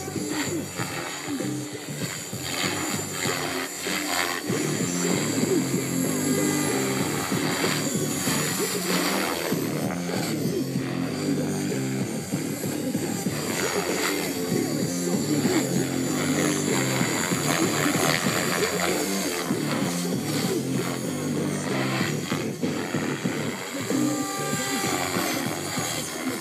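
Background music with a steady beat and a repeating bass line, which grows fuller about four seconds in.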